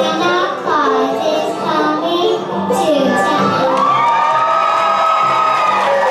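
A child singing into a handheld microphone over the band's live accompaniment, ending on one long held high note, with children in the audience shouting and cheering.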